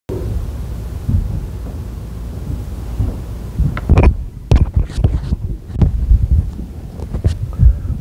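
A low rumble of microphone noise, then from about halfway a run of irregular low thumps and sharper knocks, about two a second, as someone steps up to a wooden pulpit and handles its gooseneck microphone.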